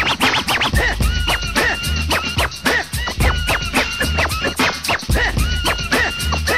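Turntable scratching over a hip hop drum beat with a heavy bass, in an instrumental break with no rapping: quick back-and-forth scratches repeat several times a second throughout.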